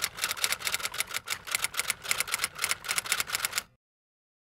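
Typewriter sound effect: a rapid, even run of key clacks, several a second, that cuts off suddenly near the end.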